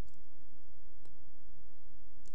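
Steady low background hum with faint hiss, and one faint click about a second in.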